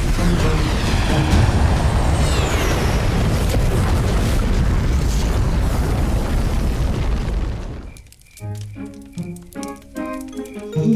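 Cartoon sound effect of a volcanic eruption: a long, loud rumbling boom with a few falling whistles, over background music. It dies away about eight seconds in, leaving a light, plinking children's music cue.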